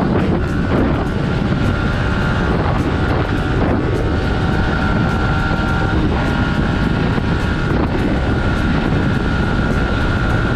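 Heavy wind noise on the camera microphone at about 110 km/h on a Yamaha R15 v3, over its 155 cc single-cylinder engine running at high revs. A steady high tone breaks off briefly a few times as the bike shifts up from fourth to sixth gear.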